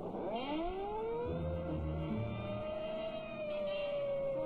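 A siren from an old film soundtrack: it winds up in pitch over about the first second, then holds a steady wail, with low music notes sounding underneath.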